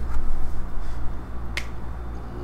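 A single short, sharp click about one and a half seconds in, over a steady low electrical hum.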